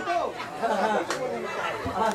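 Several people's voices talking over one another, with a faint click about a second in and a short low thump near the end.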